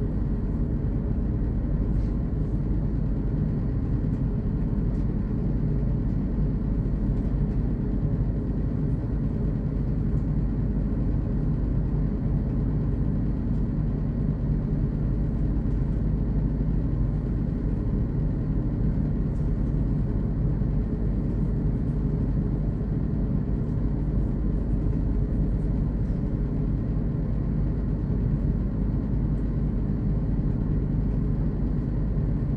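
Steady running noise inside the cab of a V/Line VLocity diesel railcar in motion: a low engine and wheel-on-rail rumble, with a few faint clicks.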